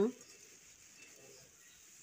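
Faint sounds of a flat spatula stirring chopped vegetables in an aluminium kadhai, with a small tick about a second in, just after a spoken word ends.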